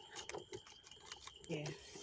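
Quiet background with faint scattered clicks and a faint steady high-pitched tone, then a single spoken "yeah" near the end.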